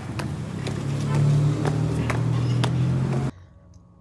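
A vehicle's engine running steadily, with a string of regular sharp clicks about two a second; both stop abruptly a little after three seconds in.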